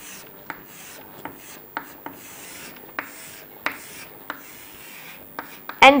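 Chalk rubbing and scraping on a chalkboard in short strokes as a band is shaded in, with sharp taps of the chalk against the board about every half second.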